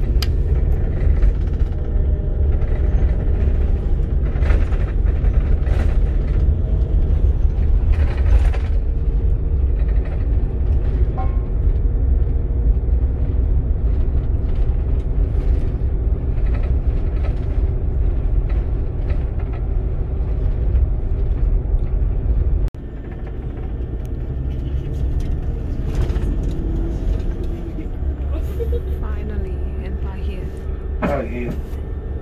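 Steady low rumble of a double-decker coach on the move, heard inside the upper-deck cabin. It drops suddenly to a quieter rumble about 23 seconds in.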